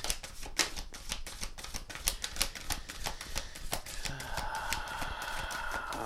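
Tarot cards being shuffled by hand, the cards slapping against each other in a rapid, irregular run of clicks. A faint steady tone joins in for the last two seconds.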